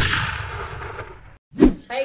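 Stinger sound effect of an animated logo intro: one loud final impact hit that rings out and fades away over about a second and a half, followed by a brief silence and a short second burst just before talking starts.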